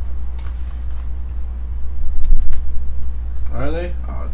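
A steady low hum, with a few faint clicks and a voice starting near the end.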